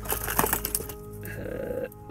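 Metal hand tools clinking and rattling against each other in an aluminium tool case as a hand rummages through it, with a flurry of clinks in the first second and a short scrape near the end. Soft background music runs underneath.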